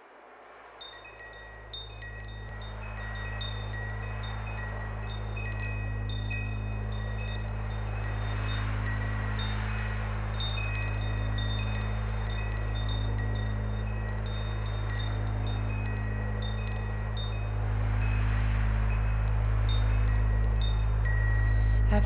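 Wind chimes tinkling, scattered high notes over a low, steady drone, as the intro of a song; it fades in over the first few seconds and slowly grows louder.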